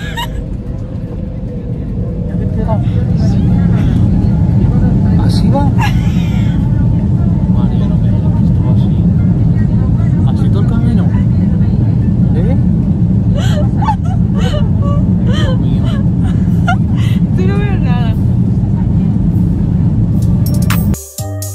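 Airliner cabin noise as the jet engines build up to takeoff power: a deep roar that swells about two seconds in and then holds loud and steady, with voices talking over it.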